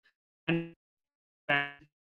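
Two brief pitched vocal sounds from a man, like hesitation noises, each about a third of a second long and each cut off into dead silence.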